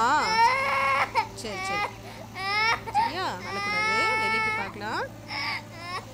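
A toddler crying in a series of high, wavering wails, the longest coming about four seconds in.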